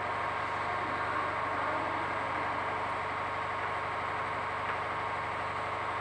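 Steady background hum with an even hiss, unchanging throughout.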